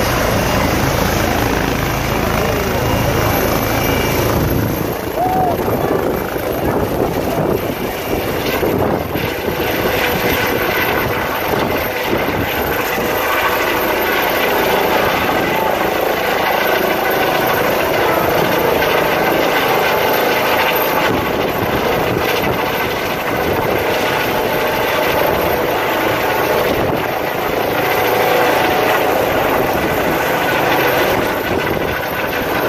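A light helicopter's turbine engines and rotor running steadily and loudly as it takes off from a dusty field and climbs away overhead.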